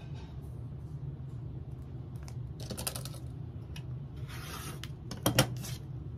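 A rotary cutter scraping through cotton fabric layers along an acrylic quilting ruler in short passes, the last trimming cut on a pinwheel quilt block. Near the end come a couple of sharp knocks as tools are set down on the cutting mat.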